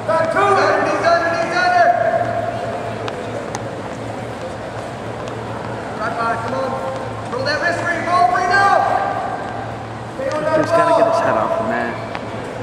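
People's voices in three bursts: at the start, from about six to nine seconds in, and near the end. Some of the calls are drawn out, and a steady low hum runs underneath.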